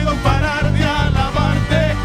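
Live worship band playing an upbeat song: electric bass notes, electric guitar and drums under a lead singer's voice.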